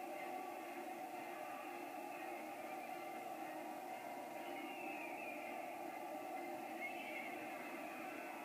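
Cartoon battle soundtrack heard through a small TV speaker: a steady roar of a charging cavalry army, massed war cries and hooves, with no clear music.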